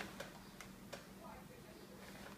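A few faint, sharp clicks, four within the first second, over quiet room tone, with a brief faint voice-like sound a little after.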